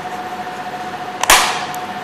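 One sharp plastic click a little over a second in, with a short fading tail, as a handheld Medis fuel cell power pack is turned and worked in the hands.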